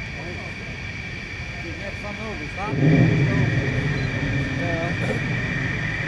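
Twin-engined Dassault Rafale Marine jet fighters running on the runway before takeoff. Their turbofans give a steady high whine, and a low rumble grows markedly louder about three seconds in.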